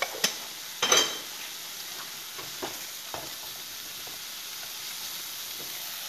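Small shrimp sizzling in a frying pan, a steady hiss broken by a few sharp taps and clinks of utensils; the loudest clink, with a slight ring, comes about a second in.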